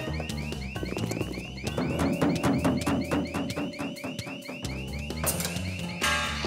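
Electronic alarm whooping rapidly, about four to five rising-and-falling tones a second, with a steady low pitched layer beneath.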